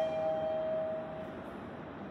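Mitsubishi elevator's electronic two-note chime ringing out, a higher and a lower tone held together. The higher note fades about a second in and the lower about half a second later, over a steady hum.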